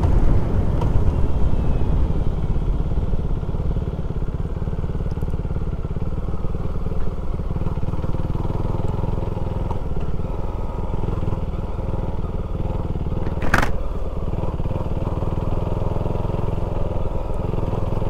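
KTM 390 Duke's single-cylinder engine running steadily as the motorcycle is ridden. There is one sharp click about two-thirds of the way through.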